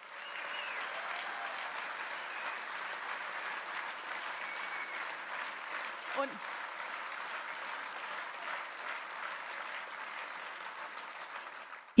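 Large audience applauding steadily in a hall, with one brief voice calling out from the crowd about six seconds in.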